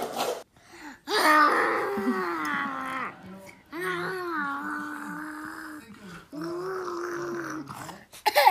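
A person's voice making three long, drawn-out wordless sounds, each about two seconds, slightly falling in pitch, with short pauses between them.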